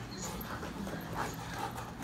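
Belgian Malinois holding a bite grip on a bite suit's leg, making short dog sounds through the grip amid scuffing of paws and suit, over a steady low hum.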